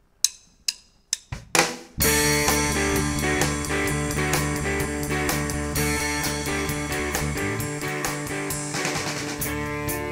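Count-in of three sharp clicks about half a second apart and a louder hit, then a church praise band with drum kit, electric guitar and bass comes in together about two seconds in and plays a steady-beat song intro.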